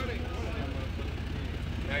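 Background chatter of several people talking over a steady low rumble.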